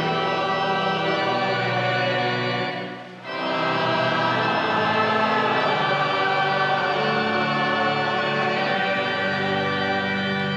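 Slow sacred music in long sustained chords, dropping away briefly about three seconds in and then resuming.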